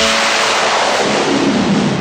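A loud hissing whoosh in the film song's recording, with no instruments or voice over it. The lower end of the hiss sweeps downward over about two seconds, and it fades just before the singing comes in.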